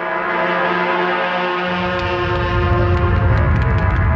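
Dramatic film background score: a loud sustained chord of many held tones that starts suddenly, joined by a deep low rumble about two seconds in.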